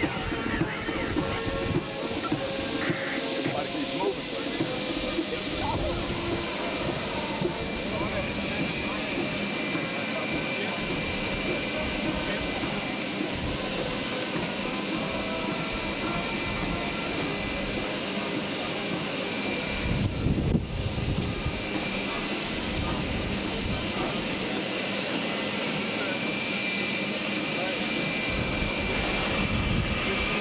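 Jet aircraft engines running steadily on an airfield apron, a constant rushing drone with a thin whine coming in near the end. A brief low rumble, like wind buffeting the microphone, breaks through about twenty seconds in.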